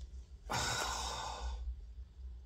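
A man's breathy sigh, starting about half a second in and lasting about a second.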